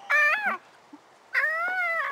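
Terrier puppy whining twice: a short high cry, then a longer cry held near one pitch that drops at the end.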